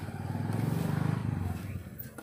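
A motor vehicle's engine passing close by, swelling to its loudest about a second in and then fading away.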